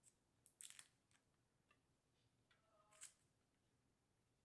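Near silence with faint, short scrapes of a knife cutting through a soft almond cake: one about half a second in and another near three seconds, with a brief metallic ring.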